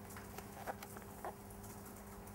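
Faint room tone with a steady low hum, and a couple of soft taps as a paperback book is handled and opened.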